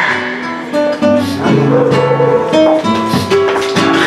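Flamenco guitar playing, a run of picked single notes with a few strummed chords.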